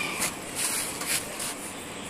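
Light rubbing and scraping, a few soft scrapes, as a ribbed rubber anti-vibration pad is slid into place under the foot of an air-conditioner outdoor unit.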